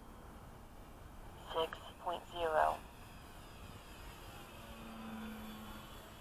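Three short wordless vocal sounds from a person, a second and a half to about two and a half seconds in. Underneath is the faint steady hum of the model plane's electric motor, swelling a little near the end.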